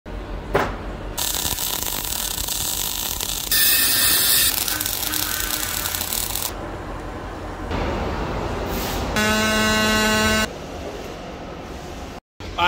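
MIG/MAG welding arc hissing and crackling in several short runs of differing loudness that start and stop abruptly, with a click about half a second in. A loud, steady buzzing tone of one pitch lasts about a second from roughly nine seconds in.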